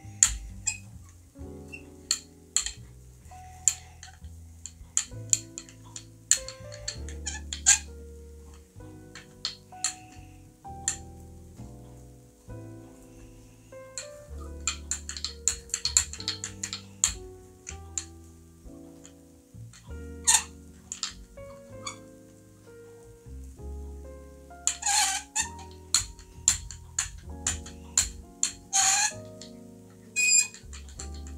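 Small hand brayer squeaking in short, repeated squeaks as it is rolled back and forth through wet acrylic paint on a gel printing plate, with a few longer, louder squeals near the end. Background music plays underneath.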